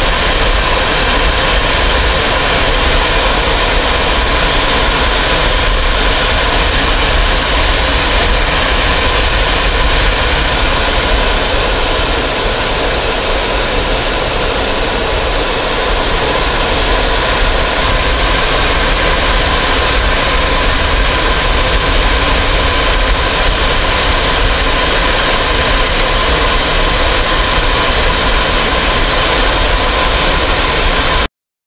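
Aircraft engine noise heard from inside an aircraft cabin in flight: a loud, steady drone with a few constant tones over it.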